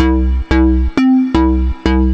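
Xfer Serum software synthesizer playing a repeating pattern of short bass notes through its Scream 1 LP filter, about two to three notes a second, each starting sharply. The tone changes from note to note as the filter's variation knob is set.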